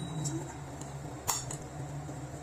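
Metal spoon stirring a chickpea salad in a ceramic bowl, clinking against the bowl a few times, with one sharper clink about a second in.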